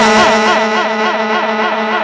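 Male naat singer holding a long sung vowel through a microphone, the pitch wavering up and down in wide regular swings about three times a second, over a steady sustained drone from the accompaniment.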